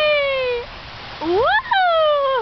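A toddler's high-pitched squealing vocalizations: one sliding down in pitch at the start, then one that rises sharply and falls away again in the second half.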